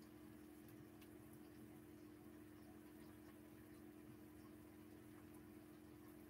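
Near silence: room tone with a faint steady hum.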